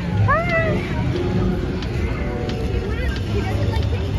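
People's voices outdoors: a brief high squeal that glides up and down about half a second in, then scattered chatter, over a steady low rumble.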